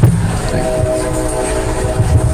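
A knock on a handheld microphone as it is passed along the table. About half a second later comes a steady droning tone of several held notes that lasts over a second, over a constant low room hum.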